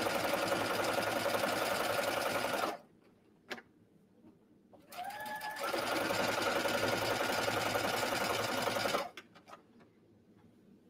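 Brother computerized sewing machine stitching a long 5 mm straight basting stitch for gathering. It stops a little under three seconds in, with a single click during the pause, then starts again with a rising whine about five seconds in and runs until it stops near the end.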